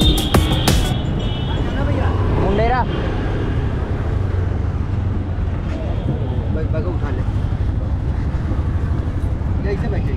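Background music cuts off about a second in. After it comes busy street noise: a steady low engine hum from auto-rickshaws, with scattered voices.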